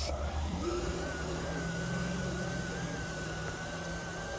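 Electric drive of a radio-controlled Zetros 6x6 truck whining steadily as it drives through grass, with a slightly wavering high tone over a lower hum; it starts under a second in and eases off near the end.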